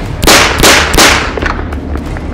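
Three gunshots in quick succession, each with a trailing echo, the last about a second in.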